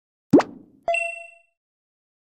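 Short sound effect: a quick pop about a third of a second in, then a bright chime of several ringing tones that fades out within about half a second.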